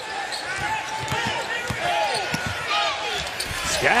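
Basketball dribbled on a hardwood court, with sneakers squeaking in short chirps over the steady noise of the arena crowd.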